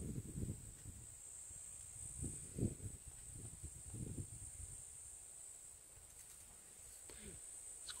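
Faint, steady high-pitched chirring of insects, with a few soft low rumbles in the first half.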